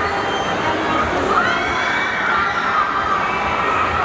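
A crowd of fans screaming and cheering at a steady loud level, with high-pitched shrieks rising and falling above it from about a second in.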